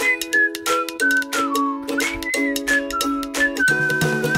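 Background music: a whistled melody over chords with a steady beat.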